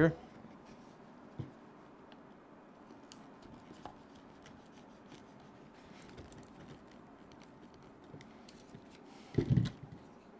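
Faint clicks and light scraping of plastic RC suspension parts being handled as a rear A-arm hinge pin is worked loose, with a short, louder low sound near the end.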